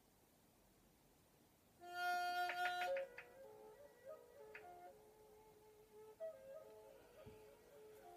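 Flute music that starts about two seconds in after near silence. It is loudest for the first second, then goes on softer with long held notes.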